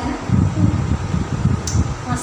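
A loud, uneven low rumble of moving air on the microphone, the kind a running fan makes, with a faint click near the end.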